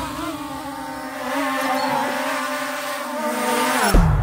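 Quadcopter drone's motors and propellers humming steadily at one pitch, the pitch dropping sharply just before the end.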